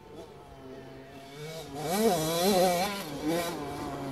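A KTM SX 85's two-stroke motocross engine revving up and down several times, faint at first and louder from about two seconds in.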